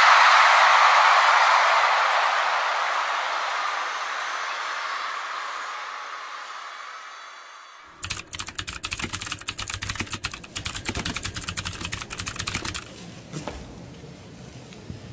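Concert crowd cheering, fading out over about eight seconds. Then, after a sudden cut, rapid keyboard typing clicks for about five seconds as text types onto the screen, with a few scattered clicks after.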